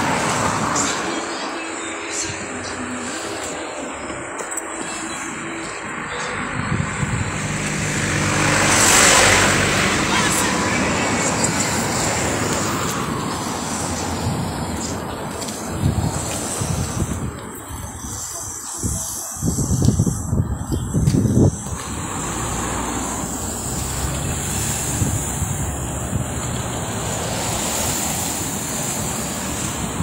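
Street traffic noise, with a vehicle passing, its sound swelling and fading, about nine seconds in. Indistinct voices run underneath, and a run of low thumps comes around twenty seconds in.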